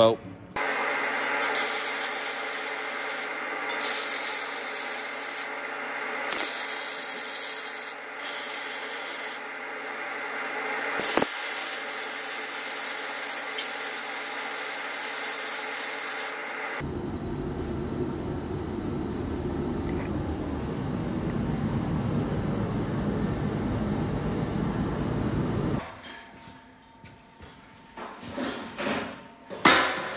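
MIG welding on a steel beam: the arc's steady crackling hiss in several short stretches for about the first sixteen seconds. A different, lower steady noise follows for about nine seconds, then a few knocks near the end.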